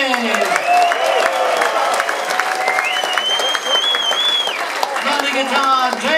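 Audience applauding, with shrill whistles from the crowd: a short one early on and a longer, rising then steady whistle about halfway through.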